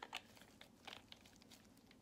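Near silence with a few faint light clicks and taps, mostly about a second in, from small ink bottles being handled on a craft mat.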